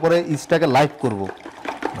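A man's voice for about the first second, then faint splashing and sloshing as a hand stirs yeast into water in a small plastic bucket.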